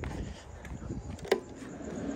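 A single sharp switch click a little past halfway, as the power is switched on to a bank of laser light fixtures, over a faint steady background.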